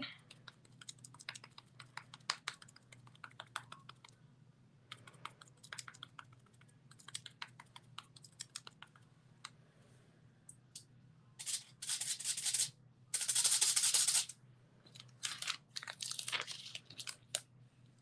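Foam sponge dabbing paint onto small wooden sign boards: runs of quick soft taps on the tabletop, several a second. Partway through come two louder rustling swishes of about a second each.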